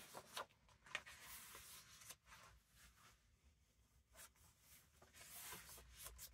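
Faint rustling of paper as the pages of a book are turned and handled, a few soft brushes near the start and again near the end, in otherwise near quiet.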